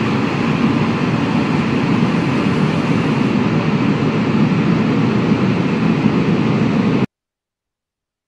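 A steady, loud rushing noise from the sound effect of an animated title sequence, with no melody or voice, cutting off suddenly about seven seconds in.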